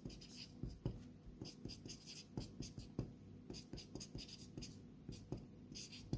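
Felt-tip marker writing on a sheet of paper: a faint run of short strokes and light taps of the tip, several a second.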